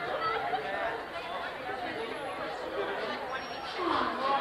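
Students chatting in a group, several voices overlapping into an indistinct babble with no single clear voice.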